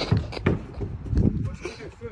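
A few dull thuds and knocks on a car's metal bodywork as a person clambers up onto its roof: one at the start, another about half a second in and a heavier one just after a second.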